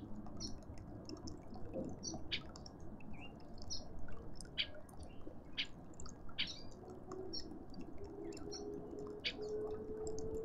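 Small birds chirping and tweeting in short, scattered calls throughout. A faint steady hum comes in about seven seconds in and slowly rises in pitch.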